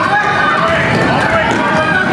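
Many children's high-pitched voices shouting and calling over one another during a game, with running footsteps under them.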